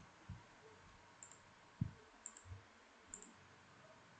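A handful of faint computer mouse clicks, irregularly spaced, over quiet room tone.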